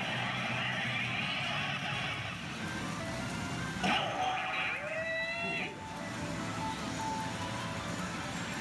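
Tom and Jerry pachinko machine playing its electronic music and sound effects over a steady background din. About four seconds in, a sudden loud burst is followed by a run of short gliding, chirping effect tones.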